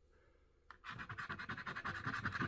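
Rapid scraping of the coating off a square of a scratch-off poster, starting about a second in with a quick run of short, even strokes after a single tap.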